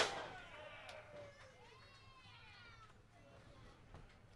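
A faint, distant voice calling out in a few drawn-out cries that rise and fall in pitch.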